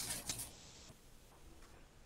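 A brief rustle with a few faint clicks of something being handled, then faint room tone.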